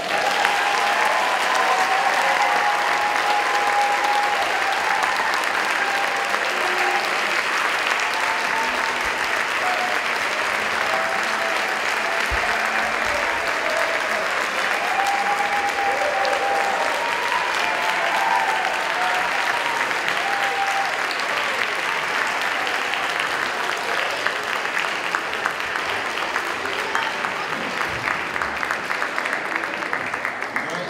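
A large audience applauding steadily and loudly.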